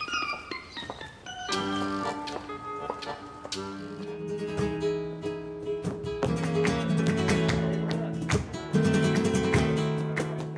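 Flamenco music: an acoustic guitar playing chords with sharp strums and long held notes, which comes in fully about a second and a half in after a quick falling run of high notes.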